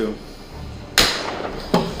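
A single heavy bang against a door about a second in, its echo dying away over about half a second.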